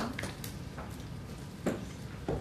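Clapping dies away at the start, leaving quiet room tone with a couple of small clicks and one soft thud a little before the end.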